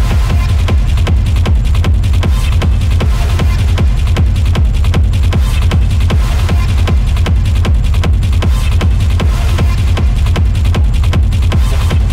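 Hard techno DJ set: a fast, heavy kick drum and bass come in suddenly right at the start and keep a steady driving beat.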